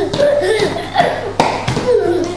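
Oversized adult leather shoes clomping on a tiled floor as a small child walks in them, a few sharp knocks about half a second apart.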